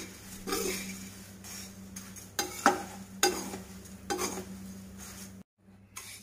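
A metal spatula scrapes and turns flattened rice (poha) frying in oil in a kadhai on medium-to-high heat. Sharp scraping strokes come every second or so over a light sizzle. The sound breaks off briefly near the end.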